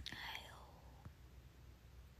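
A young woman's short breathy whisper close to the microphone in the first half-second, then a faint click about a second in; otherwise near silence.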